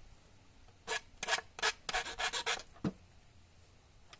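Hand file scraping on the end of a steel-wire crank: a quick run of about eight strokes over nearly two seconds, then a single knock.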